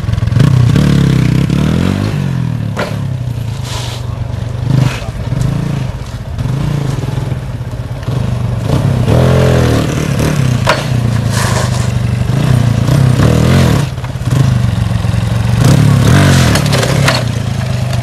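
TVS Apache motorcycle's single-cylinder engine running and revving up and down as it is ridden, with a few sharp knocks and clatters from the bike.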